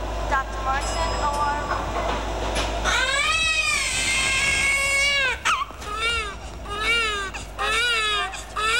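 Baby crying: short fussing sounds at first, then a long wailing cry about three seconds in, followed by a string of shorter rising-and-falling cries about once a second.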